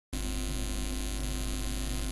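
Steady electrical mains hum with hiss, starting abruptly right at the start and holding at one level throughout.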